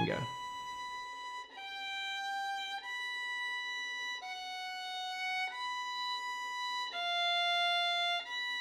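Solo violin playing slow, single held notes: a high fourth-finger note returns between lower notes that step down each time, so the interval widens with every pair. It is an interval exercise for keeping the pinky's shape. Each note lasts about a second and is held steady.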